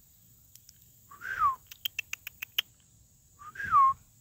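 A person whistling and clicking to call puppies: two short slurred whistles, each rising slightly and then falling, about two seconds apart, with a quick run of about seven sharp tongue clicks between them.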